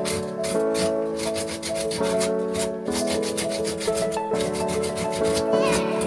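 Repeated hand-rubbing strokes of a wooden block against a surface, like sanding, several a second and uneven in spacing, over background music of slowly changing held chords.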